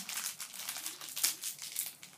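Plastic blind-bag wrapper crinkling in a child's hands as it is worked open: a quick, irregular run of crackles, a few sharper ones in the second half.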